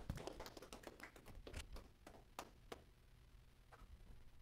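Faint, irregular clicks and taps of a clip-on microphone being handled and unclipped, heard close through the microphone itself, most of them in the first couple of seconds, a few more near the end.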